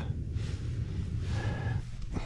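Soft rubbing hiss of a cloth towel wiping the surface of a solar panel, over a steady low rumble.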